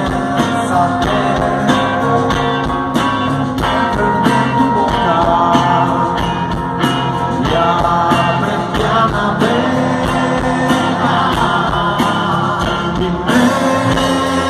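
A rock band playing live through a stage PA: a singer over electric guitars and drums, recorded from the crowd.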